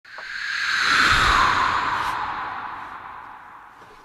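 Whoosh sound effect: a swell of airy noise that builds over about a second, then slowly fades while falling in pitch.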